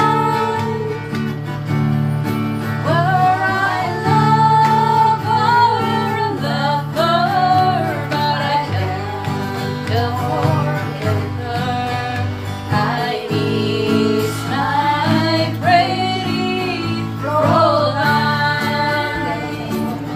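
Women singing a song together to a strummed acoustic guitar.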